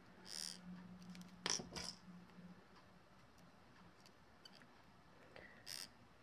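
Faint handling sounds of chain nose pliers picking up a wire jump ring: a soft rustle near the start, two small clicks about a second and a half in, and another brief rustle near the end, otherwise near silence.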